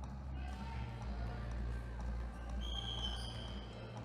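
Indoor basketball-hall ambience: a low steady hum with voices, and a basketball bouncing on the hardwood court. A short, high-pitched squeal stands out for under a second near the end.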